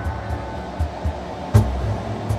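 Slow ambient meditation music: soft low pulses repeat under a quiet sustained bed, with one struck note sounding about one and a half seconds in.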